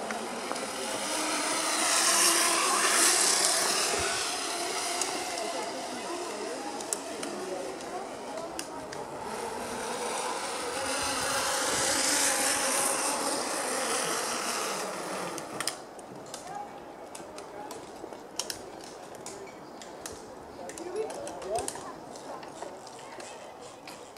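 Zip-line trolley whirring along a steel cable as a rider passes. It happens twice, each run swelling and fading over several seconds; the second stops abruptly about two-thirds of the way through, followed by a few clicks.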